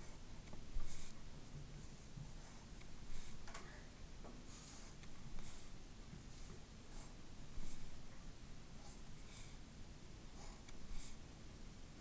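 Pencil drawing on paper against a wooden ruler: a series of short, scratchy strokes at irregular intervals as lines are ruled.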